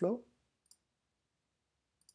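The last syllable of a spoken word, then one short, faint click of a computer pointing device about two-thirds of a second in, as the File menu is opened. The rest is quiet.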